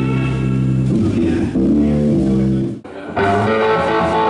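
A rock band's electric guitar and bass guitar playing held notes. About three seconds in, the sound drops out for a moment and the music picks up again at a different passage.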